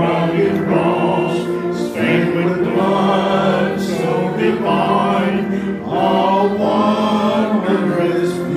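Voices singing a slow hymn, long held notes that change every second or two.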